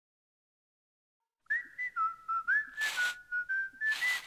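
Silence for about a second and a half, then a whistled jingle: a quick tune of short notes sliding from one to the next, broken by two brief swishing noises.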